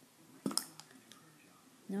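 Hard plastic stacking cups knocking together: one sharp clack about half a second in, then a couple of lighter clicks.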